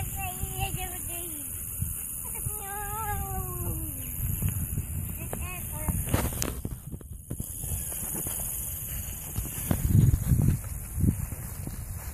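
A toddler's high-pitched, drawn-out vocal sounds, twice in the first four seconds and briefly again around five seconds. A low rumble runs underneath and grows louder near ten seconds.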